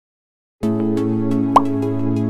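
Background music begins about half a second in: a soft, steady held chord with light ticking. A short rising bloop, like a water drop, comes about a second and a half in and is the loudest sound.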